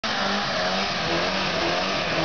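Mk2 Ford Escort doing a burnout: the engine is held at a fairly steady pitch while the rear tyres spin and screech on the tarmac under a dense hiss.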